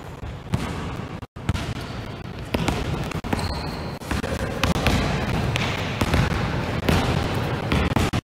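Several basketballs being dribbled on a gym floor, with irregular, overlapping bounces from different players.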